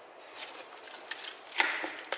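Plastic spatula stirring cream-coated diced fruit in a plastic tub: a few soft wet squishes and scrapes, the loudest near the end.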